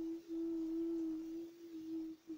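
A child's voice holding one long, steady hummed note, drawn out from the word "then" while thinking of the next name.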